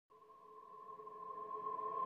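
Intro music for a logo card: a held electronic chord of a few steady notes swelling in from silence and growing steadily louder.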